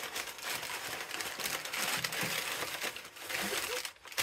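Tissue paper crinkling and rustling as it is pulled out of a cardboard box and unwrapped from a small boxed ornament.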